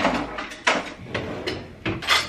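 Kitchen drawers and cupboards being opened and rummaged through: about four sharp knocks and clatters over two seconds.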